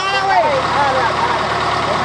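Case backhoe's diesel engine running steadily at idle while its bucket holds a pole in place.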